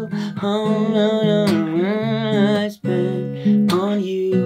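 A man singing long held, gliding notes over a small acoustic guitar strummed in steady chords, with a brief break just before the last second.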